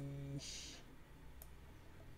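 A man's held hesitation sound trailing off, a short breathy hiss, then a faint single click about a second and a half in over quiet room tone.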